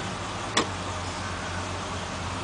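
Antique police sedans driving slowly past, a steady low engine and road sound. A single sharp click about half a second in.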